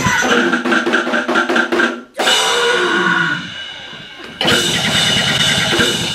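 Live cybergrind/noisecore music: a dense, rapidly pulsing wall of noise cuts out abruptly about two seconds in, leaving a quieter sliding tone that falls in pitch, then the full band with the drum kit crashes back in loud about four and a half seconds in.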